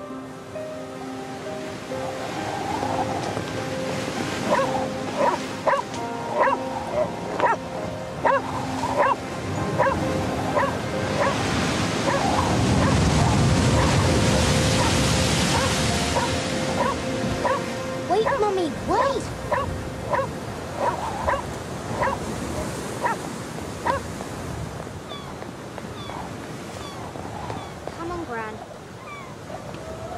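A dog barking repeatedly, roughly once a second, starting a few seconds in. Surf from heavy waves breaking over a seafront pier swells up in the middle. Held background music notes sound under the opening.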